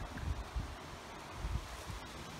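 Wind buffeting a phone's microphone, a low uneven rumble, with faint rustling underneath.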